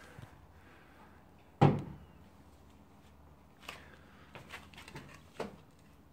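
A single sharp thump about a second and a half in, the loudest thing here, followed later by a few faint taps and clicks.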